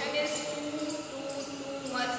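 A woman's voice speaking, explaining a lesson.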